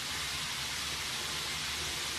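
Steady sizzling of potato strips frying in a pan.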